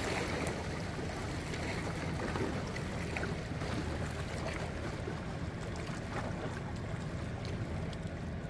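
Steady low drone of a river boat's engine, with water washing at the bank.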